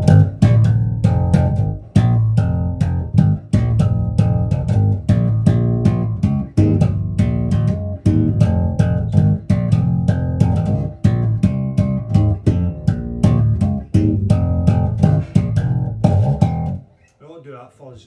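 Richwood 1970s-style Jazz Bass copy played slap style through a Laney RB4 bass amp and a 1x15 extension cabinet: a fast, continuous run of sharp thumb slaps and popped notes. It stops about a second before the end.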